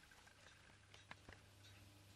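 Near silence: room tone with a faint low hum and two faint ticks a little past the middle.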